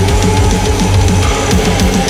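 Djent-style progressive metal instrumental passage: heavy, low-tuned guitars and bass under driving drums and cymbals, with a held high note on top.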